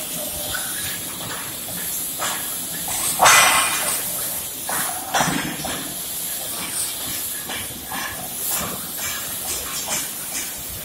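Oxy-fuel gas cutting torch hissing steadily as it cuts through a rusted nut and bolt. There are louder rushing bursts about three seconds in and again just after five seconds, as the flame showers sparks.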